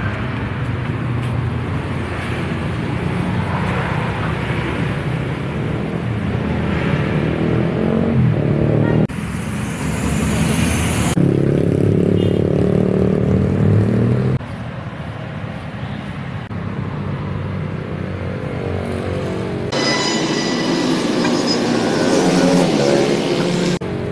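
Street traffic on a city road, cars and motorbikes passing with their engines running. The sound changes abruptly several times, about 9, 11, 14 and 20 seconds in.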